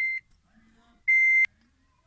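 Car dashboard chime: a steady high beep that stops just after the start, then a second short beep about a second in, cut off with a click.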